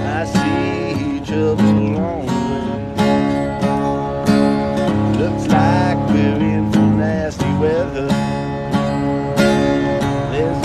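Acoustic guitar played with repeated strums and a bass line, a blues-style riff, with a man singing along over it.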